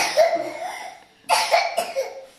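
Someone coughing in two short bouts about a second apart.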